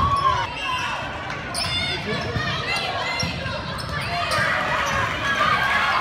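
Indistinct high-pitched calling and shouting from volleyball players and spectators in a gymnasium, with a couple of sharp thuds of the ball being played, one about a second and a half in and another past the four-second mark.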